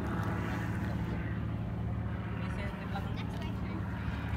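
An engine running steadily, a low even hum with no change in pitch.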